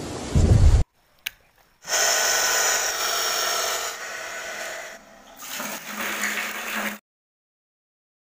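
Rushing water starts about two seconds in, after a brief click, and runs steadily until it cuts off suddenly near the end. Before it comes a short, loud, low rumble.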